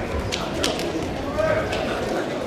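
Three or four sharp clicks over a low hubbub of voices.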